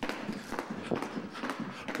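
Two jump ropes turned in Chinese wheel slapping the floor in a quick, even rhythm, with the jumpers' feet landing in time with them.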